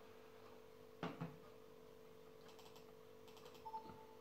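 Near silence over a low steady hum: a soft tap about a second in, two short runs of faint clicks in the second half, then a brief faint tone and another tap near the end, like buttons being pressed.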